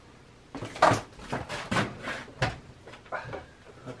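A run of clunks and knocks as the door of an old electric dryer, converted into a fur drum, is opened and handled after the drum has stopped. The loudest knock comes about a second in, and fainter ones follow near the end.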